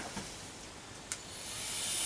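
A drag on an e-cigarette: a small click about halfway, then a hiss of air drawn through the vape that builds over half a second and holds steady.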